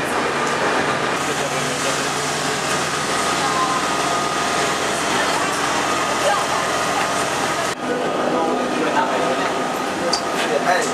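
Commuter train moving along an underground station platform: a steady rushing rumble of the carriages, broken by a brief sudden gap about three-quarters of the way through.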